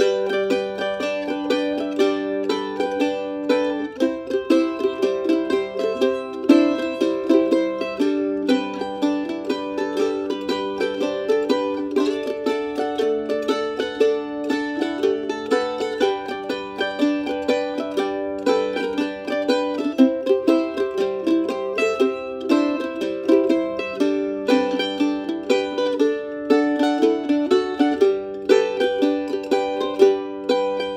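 F5-style mandolin played as guitar-style backup. Picked root and fifth bass notes alternate with chord strums, upstrokes and arpeggiated chords in a steady boom-chuck rhythm over a G, C and D chord progression.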